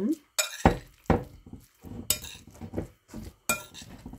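Metal spoon stirring a minced-meat and vegetable mixture in a glass bowl, clinking sharply against the glass about five times, with softer scraping between.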